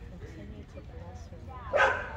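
A dog barks once, short and loud, near the end, over faint low talk.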